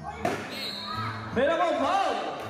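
A basketball bounces once on the court, a sharp smack about a quarter second in, and a voice calls out near the end.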